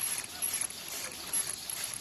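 High-speed paper cup forming machine, rated at 120 cups a minute, running at production speed: a rapid, even mechanical clatter of about four clacks a second, over a steady thin high tone.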